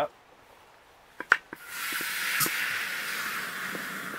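Water from a garden hose nozzle filling a plastic pump-sprayer bottle: after two sharp clicks, a steady rushing hiss of water starts about a second and a half in and keeps going.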